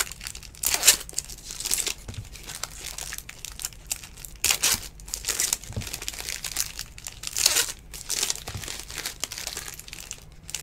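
Foil wrappers of 2019 Bowman baseball trading-card packs crinkling and tearing as packs are ripped open by hand, in short irregular bursts.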